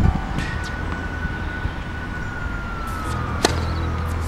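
A tennis ball struck once by a racket about three and a half seconds in, a single sharp pop. Underneath, a faint thin high tone holds and slowly falls in pitch, over a low steady outdoor rumble.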